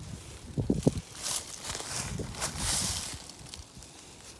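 Dry leaf litter rustling and crunching under footsteps and movement, with a couple of brief thumps just under a second in.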